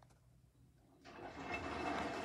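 Samsung front-load washing machine: after a second of near silence the drum starts turning, wet laundry sloshing and tumbling over a low motor rumble and a steady high whine, growing louder.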